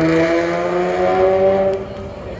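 A car engine accelerating, its pitch rising steadily for almost two seconds before it drops away suddenly near the end.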